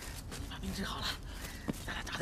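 A person's voice making short, broken non-speech vocal sounds: a few brief pitched fragments spaced through the two seconds rather than words.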